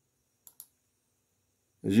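Near silence, broken by two faint, brief clicks about half a second in; a man's voice starts near the end.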